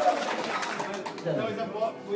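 The band's held note and drumming break off right at the start. What follows is quieter: a voice in slow phrases that slide up and down in pitch.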